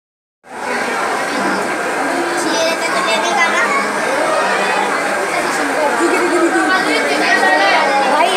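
Crowd chatter: many voices talking over one another at once, beginning about half a second in.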